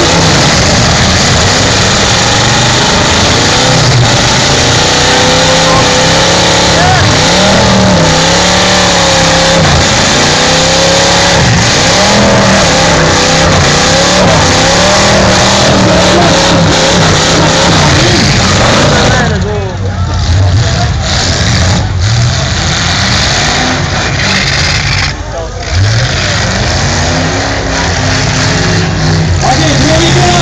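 Demolition derby car engines revving loudly through open exhaust stacks, the pitch rising and falling again and again over dense background noise. After about two-thirds of the way through the sound thins and dips briefly, then the revving goes on.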